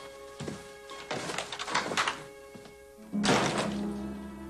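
A wooden door being handled over background music: a short knock early, scraping and rattling about a second in, then the door shutting with a loud thunk about three seconds in as the music swells.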